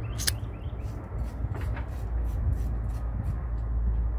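Steady low rumble of outdoor background noise, with a sharp click shortly after the start.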